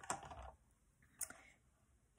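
Faint clicks and light knocks of the Dash Deluxe Egg Bite Maker's plastic lid being swung open on its hinge, then one brief click a little over a second in as hands reach into the cooking plate.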